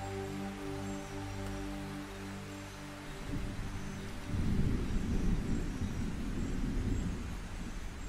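A slow music pad of held chords fades out about three seconds in, giving way to a low rumble of tropical thunder over rain that swells about a second later.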